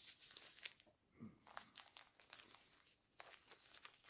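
Faint rustling and crinkling as a cloth garment is pulled off a silicone doll and over its disposable diaper, in short scattered handling sounds.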